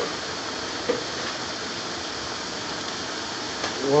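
Chicken tikka masala sauce bubbling vigorously in a pan on the stove, a steady hiss of popping bubbles. The bubbling is the sign the cook reads as the sauce being cooked well.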